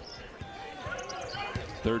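Basketball being dribbled on a hardwood court during live play: a few irregular bounces over steady arena crowd noise.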